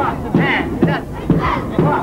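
A large group of men chanting together in a rhythmic traditional folk performance, with a regular pulse of about two beats a second.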